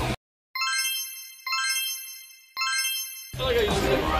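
Three bright, bell-like chime strikes, about a second apart, each ringing out and fading over dead silence. Music comes back in near the end.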